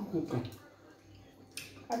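Mouth sounds of eating fufu with slimy ogbono soup: a short hummed 'mm' at the start, then quiet chewing and a brief wet slurp just before talking resumes.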